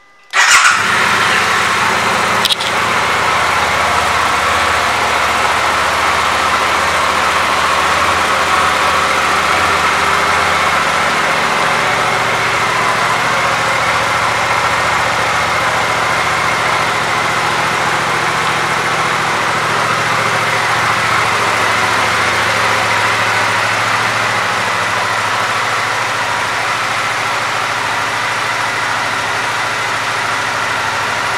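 2024 Suzuki GSX-8R's 776 cc parallel-twin engine starting about half a second in, with a brief surge in level, then idling steadily. There is a single sharp click about two seconds after the start, and the idle settles slightly quieter near the end.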